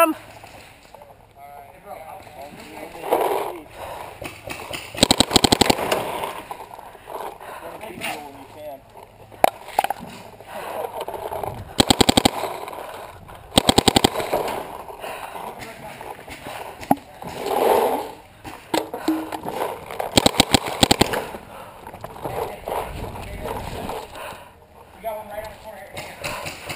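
Planet Eclipse Ego LV1 electropneumatic paintball marker firing fast strings of shots, in four bursts of about a second each. Shouted voices in the distance come in between the bursts.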